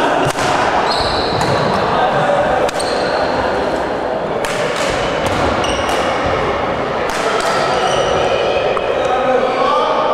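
Echoing background chatter of players and onlookers in a large sports hall, with sharp clicks of badminton rackets striking the shuttlecock at irregular intervals during a doubles rally.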